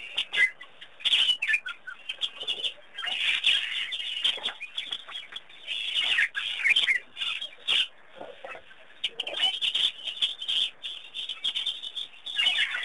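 A flock of birds chirping and calling in dense, overlapping chatter, busier in some stretches than others.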